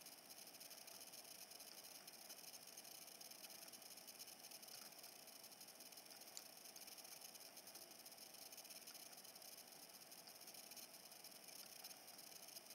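Near silence: a faint, steady hiss of room tone, with one tiny click about halfway through.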